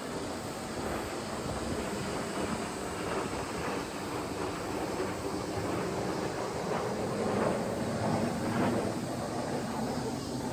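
Six Kawasaki T-4 jet trainers flying overhead in formation: a steady distant jet rumble that swells a little about seven to eight seconds in.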